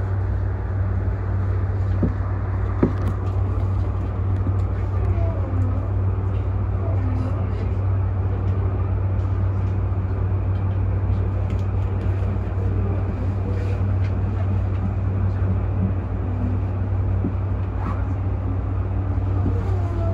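Steady low rumble of an E235-1000 series electric train heard from its cab, with faint voices in the background.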